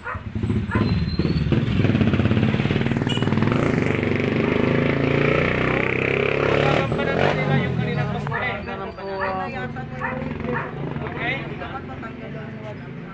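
A motorcycle engine running close by, loud for about six seconds with its pitch sliding, then fading away as a man's voice comes back through.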